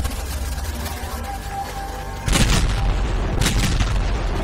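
Logo intro sting: a deep rumble that starts suddenly, then a loud boom with a whoosh a little past halfway and a second, shorter burst near the end.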